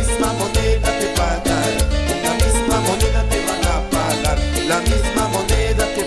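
Live Latin dance band (orquesta) playing an upbeat salsa-style number, with a strong, regular bass line and a steady, quick percussion beat.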